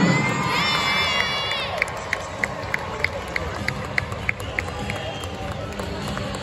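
Crowd noise filling an indoor arena. Held pitched tones run through the first second and a half, then a string of short, sharp clicks comes evenly about three times a second.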